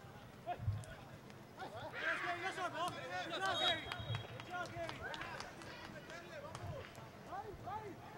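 Faint, distant voices shouting and calling out across an outdoor soccer pitch during play, with a few scattered knocks.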